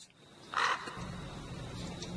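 An American crow gives a single short caw about half a second in, followed by a low steady hum in the background.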